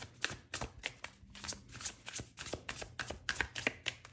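A deck of cards being shuffled by hand: a quick, irregular run of card clicks and flicks.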